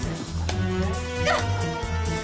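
Tense background score with a pulsing low beat and sustained tones. A short, high, rising cry sounds over it about two-thirds of the way through.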